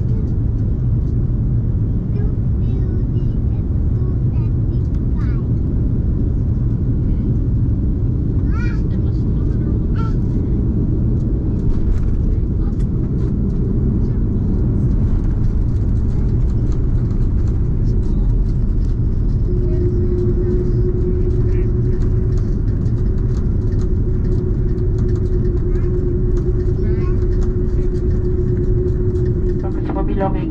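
Airbus A330-200 cabin noise heard from a window seat over the wing during the final approach, touchdown and rollout: a loud, steady rumble. A steady tone comes in about two-thirds of the way through and holds to the end.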